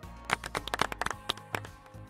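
Background music with held tones, under a run of quick, irregular clicks and taps.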